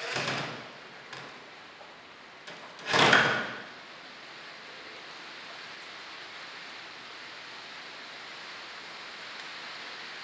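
Two brief scraping sounds of the wooden dresser's drawers and panels shifting, one at the start and a louder one about three seconds in.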